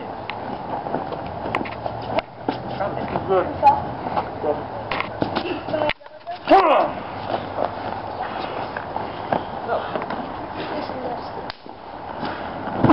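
Short shouted calls from voices over a steady outdoor background noise, with scattered knocks and scuffs of bodies grappling on old mattresses.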